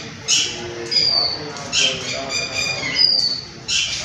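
Birds calling: harsh squawks repeated about every second and a half, with short, high falling whistles between them.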